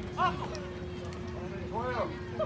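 Two short, high calls from people at a softball game, one just after the start and one near the end, over a steady low hum and general outdoor background.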